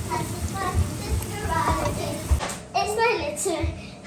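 Young children's voices chattering as they play, over background music.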